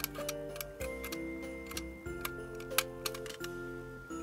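Background music with slow held notes, over irregular short sharp clicks of a utility knife blade shaving a thin wooden strip, about a dozen, the sharpest a little before the end.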